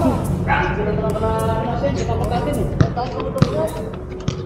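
A basketball bouncing on an outdoor concrete court, two sharp bounces close together about three seconds in, under players' voices calling out.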